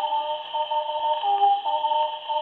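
A 1941 Odeon 78 rpm shellac record playing an instrumental passage between sung verses, with held melody notes stepping from one pitch to the next. The sound is cut off above about 4 kHz, with a couple of faint surface clicks.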